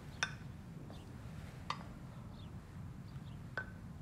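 Three light clinks of kitchenware being handled, each with a brief ring, spaced over a low steady hum, with faint bird chirps in the background.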